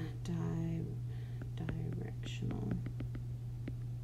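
A woman's soft, drawn-out voice sounding out a word in scattered bits while writing, with a few faint clicks, over a steady low hum.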